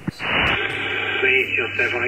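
A click, then a shortwave receiver's hiss and a steady low hum as a single-sideband voice transmission on the 10-metre band comes in. The distant operator's voice starts faintly about a second in.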